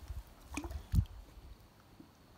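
A northern pike being released by hand over the side of a small boat into the water: light splashing and one dull thump about a second in.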